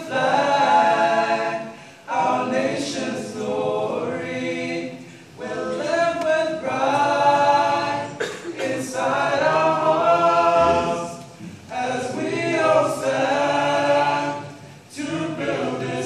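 A seven-voice vocal ensemble singing unaccompanied in parts, in sung phrases of about three seconds broken by short breaks for breath.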